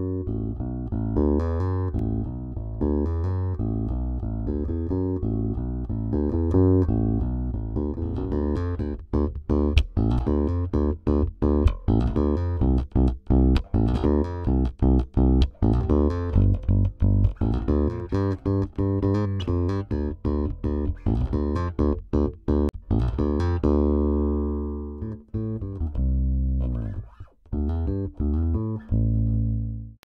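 Music Man Classic Sterling electric bass with a single humbucking pickup, played solo as a groove of plucked notes that turn sharper and more percussive about eight seconds in. Near the end one note is left to ring out and fade slowly, showing off the bass's long sustain.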